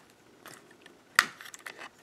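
Plastic parts of an X-Transbots Krank transforming robot figure pushed into place, giving with one sharp click about a second in, amid faint ticks and scrapes of handling. The click marks a tight joint that is not smooth.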